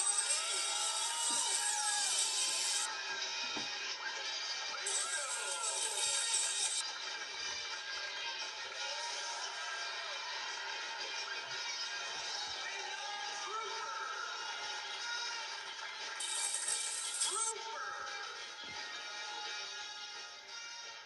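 Music from a cartoon show's opening playing on a television, picked up from the TV's speaker in the room, with voices mixed in. Bright hissy bursts come in at the start, again about five seconds in, and once more near the end.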